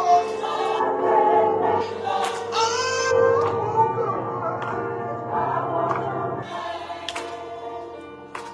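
Church choir and congregation singing a gospel hymn over steady held chords, the singing thinning out near the end.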